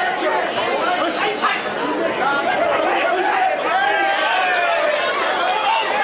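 Fight crowd of many overlapping voices shouting and chattering.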